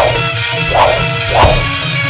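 Fight-scene soundtrack: music with steady held notes, cut by three sharp whip-like strike sound effects for the blows of the fight, at the start, just under a second in, and near the end.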